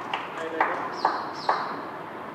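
A tennis ball bounced repeatedly between points: three sharp pats about half a second apart.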